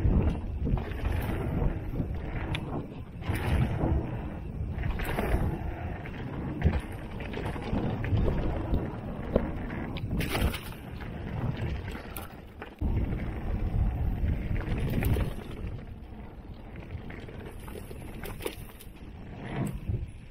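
Mountain bike rolling fast down a dirt trail: wind rushing over the camera microphone and tyres on dirt, with sharp knocks and rattles from the bike over bumps. The rush eases for a few seconds near the end.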